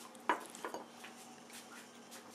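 Cat eating melon chunks from a china saucer: a sharp clink about a third of a second in, then a few lighter clicks, as the cat's mouth knocks against the saucer.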